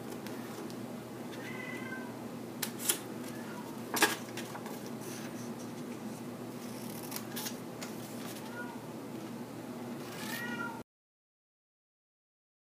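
A cat meowing a few times in short pitched calls, near the start and again near the end. Between the calls come a few sharp snips of scissors cutting corner squares out of double-sided cardstock. The sound cuts off suddenly near the end.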